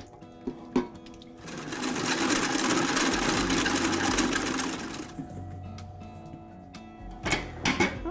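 Vintage commercial stand mixer running, its flat beater mixing melted butter and chocolate into creamed sugar and eggs for a brownie batter. It whirs loudly for about three seconds, then runs quieter, with a couple of knocks near the start.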